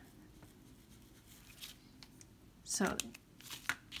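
Faint scratching of a brush-pen tip rubbing ink onto a plastic Ziploc bag, then a few short crinkles of the bag being handled near the end.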